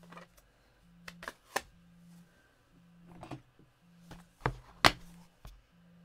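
Scattered clicks and knocks of plastic craft supplies being handled and set down on a table: a stamp ink pad in its plastic case and a clear plastic stamp case. The two sharpest knocks come close together about four and a half and five seconds in.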